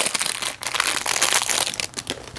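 Clear plastic packaging around a small bubble magnet crinkling as it is handled: a dense crackle that dies away near the end.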